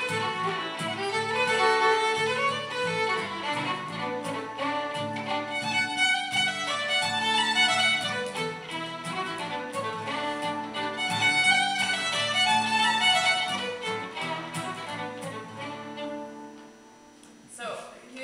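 Fiddle playing a traditional Gaelic tune with acoustic guitar strumming the accompaniment. The music stops about a second and a half before the end, and a voice begins.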